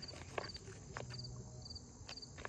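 Faint insect chirping: short pulsed chirps repeating about twice a second, with a few soft clicks in between.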